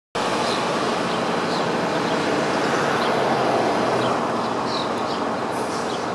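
Steady city street traffic noise, swelling a little around the middle, with short bird chirps heard over it several times.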